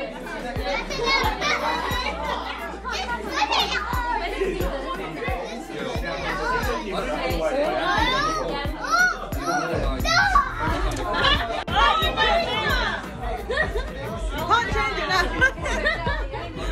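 Several women's and children's voices chattering over one another during a party game, over background music with a steady beat whose bass gets heavier about ten seconds in.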